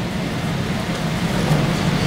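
Steady room noise in a hall with a PA system: an even hiss with a faint low hum, in a pause between spoken sentences.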